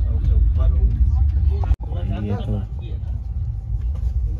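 Steady low rumble inside a train coach, with people's voices talking over it. The sound drops out abruptly for an instant about two seconds in, then goes on a little quieter.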